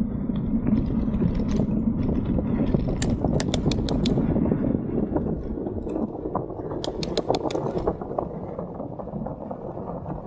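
Bicycle being ridden along a lane: a steady low rumble of wind on the microphone and tyres on the road, with two short runs of rapid clicking from the bike, about three and seven seconds in.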